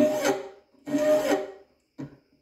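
Hand file being stroked across the teeth of a shop-made dovetail cutter held in a vise, filing relief into the flutes before the cutter is hardened. One stroke ends about half a second in and a second full stroke follows, each with a faint ringing note.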